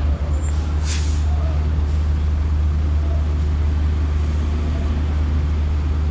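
A tour coach's diesel engine running with a steady low rumble close by, and a short hiss of air from its air brakes about a second in.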